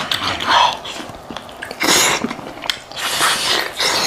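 Close-miked wet eating sounds of a man chewing and sucking meat off a cooked sheep head held in his hands, with three loud slurping bursts about a second apart over smaller wet clicks.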